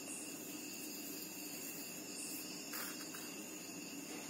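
Steady high-pitched trill of insects in the background, with a couple of faint dry rustles of kolam powder being trickled from the fingers onto the floor about two and a half seconds in.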